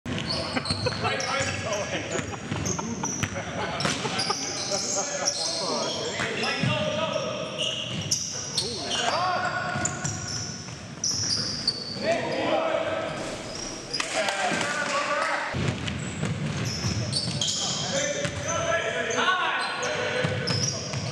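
Basketball game in a gymnasium: the ball bouncing on the hardwood floor, sneakers squeaking, and players' indistinct voices calling out across the court.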